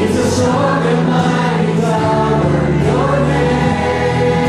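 Choir singing church music with instrumental accompaniment, in long held notes over a steady bass.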